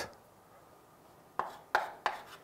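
Chalk striking a chalkboard as a new line is started: quiet at first, then three short sharp taps in the second half.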